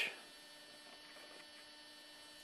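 Faint steady electrical hum with light hiss: mains hum in the room tone, after a word ends at the very start.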